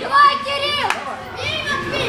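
High-pitched children's shouts from the ringside crowd at a youth boxing bout: two long yelled calls, one near the start and one in the second half, with a single sharp smack about a second in.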